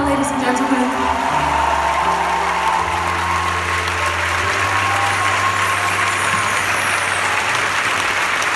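Audience applauding in a large concert hall as a live song ends. The band's last held notes ring under the clapping and die away within the first few seconds.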